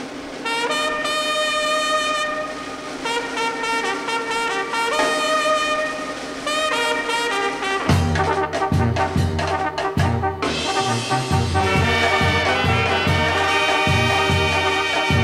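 Sinaloan-style banda brass music starting from silence: trumpets and trombones play the melody alone, then about eight seconds in a low bass line and drums come in with a steady beat.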